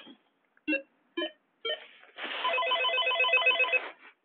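An electronic trilling ring: a rapid warble of several tones, about eight repeats a second, from about two seconds in until just before the end. It is preceded by three short tonal blips.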